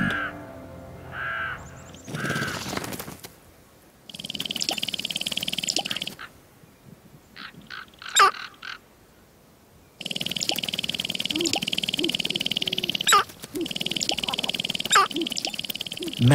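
Sharp-tailed grouse at a lek: a few short calls, then the males' display dance, a fast rattling of stamping feet and rattled tail quills. It comes in a two-second burst about four seconds in and again from about ten seconds in, with sharp calls in between.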